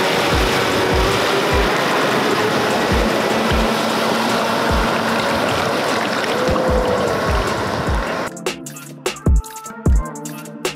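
Awake electric jet surfboard running at speed across the water: a loud, steady rush of water and spray, over background music with a steady beat. About eight seconds in the water rush cuts off suddenly, leaving only the music.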